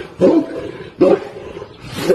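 A huge dog barking: two deep, loud barks a little under a second apart.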